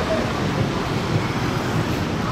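City road traffic below: a steady low rumble of engines and tyres.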